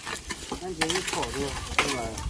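A long-handled hoe chopping and scraping into clumps of clay soil: a few sharp strikes with gritty scraping, the loudest strike near the end.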